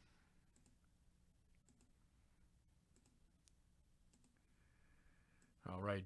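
Faint computer mouse clicks, several spaced irregularly, as a web-page button is clicked over and over. A man's voice starts near the end.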